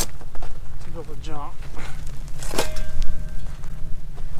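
Steel shovel striking and scraping hard, rocky desert ground, with a sharp strike right at the start and another about two and a half seconds in, the second followed by a brief ringing tone from the blade. A steady low rumble of wind on the microphone runs underneath.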